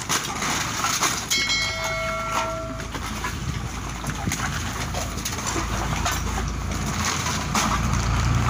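Plastic sack rustling and crinkling, with scattered clicks and clinks of scrap cans and bottles being handled. A brief ringing tone sounds about a second and a half in, and a low rumble builds in the second half.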